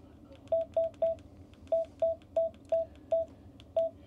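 Key beeps from a Vero handheld ham radio as its arrow key is pressed to scroll through the settings menu: nine short beeps of the same pitch, three quick ones, a pause, five more, then one near the end.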